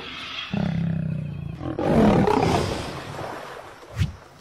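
Lion growling, a low steady growl followed about two seconds in by a louder, rougher roar that trails off.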